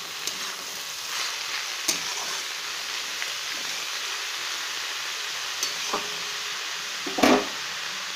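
Chopped spinach sizzling in hot oil in a kadai while a spatula stirs and tosses it, with a few scraping clicks and one louder knock near the end.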